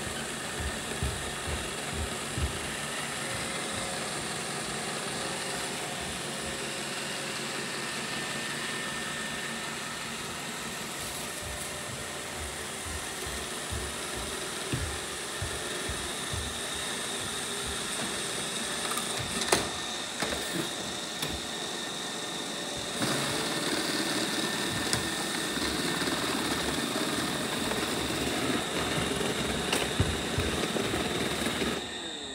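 Robot vacuum cleaners running on a hardwood floor: a steady whir of motors and brushes with a faint high hum. It gets louder about three quarters of the way through, and there are scattered low thumps.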